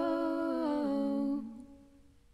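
Two women's voices holding a long closing note in harmony, stepping down in pitch just under a second in, then fading out over the last half second, with one faint note lingering.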